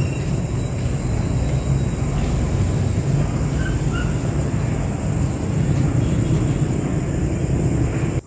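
Steady low rumbling background noise, with a faint continuous high-pitched whine above it and a few faint short chirps.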